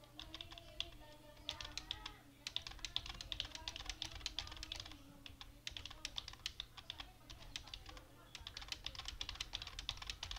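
Typing on a computer keyboard: rapid runs of key clicks with a few short pauses.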